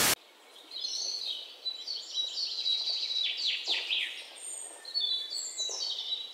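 A short, loud burst of TV-static noise, then chirping birdsong over a steady hiss, with quick runs of high chirps and falling notes.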